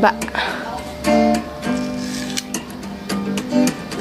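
Background music played on acoustic guitar: plucked notes held in steady chords.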